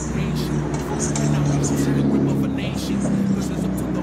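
City street traffic at an intersection: a vehicle engine runs steadily close by, giving a low hum that drops away about three seconds in.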